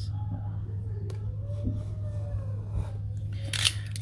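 Cardboard trading-card hanger box being torn open by hand: small clicks and rustles, then one short sharp rip about three and a half seconds in. A steady low hum runs underneath throughout.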